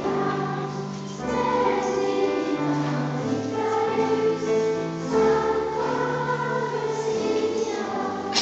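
Children's choir singing a slow carol in held, sustained notes.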